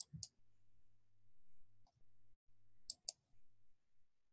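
Computer mouse button clicking: two quick clicks at the start and two more about three seconds in, over a faint low hum.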